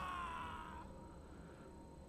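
Faint held pitched tone from the episode's soundtrack, sliding slowly down in pitch and fading out within the first second, then near silence.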